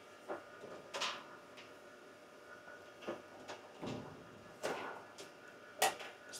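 Ethernet patch cables being handled at a network rack: a handful of light clicks and rustles, scattered irregularly, over a faint steady tone from the rack equipment.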